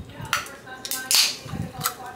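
Aluminium drink can opened by its tab: a click, then a short fizzing hiss about a second in, with a few light taps around it.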